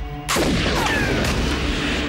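Rifle shot: a sudden loud crack about a third of a second in, followed by a long rolling echo that fades slowly.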